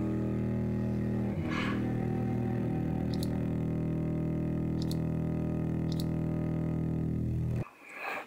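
Sampled cello played from a Kontakt library, holding a single low sustained note that stays steady and then cuts off shortly before the end.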